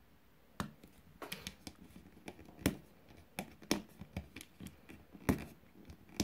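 Fingernails picking and scratching at the stuck-on protective covering of a mirror, a string of irregular small clicks and scrapes as it refuses to lift.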